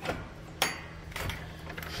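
A few light knocks and one sharp click about half a second in, from moving through a wooden-framed doorway, over a steady low hum.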